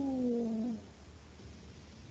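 A person's long, drawn-out 'ohhh' of realisation, held on one vowel with the pitch rising a little and then falling. It trails off under a second in, leaving faint line hiss.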